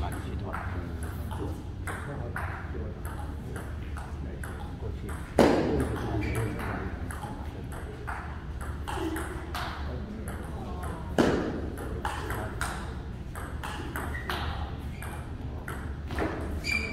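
Table tennis ball clicking back and forth on the table and rubber-faced paddles in quick rallies, in a large reverberant hall. Two much louder sharp knocks stand out, about five and eleven seconds in.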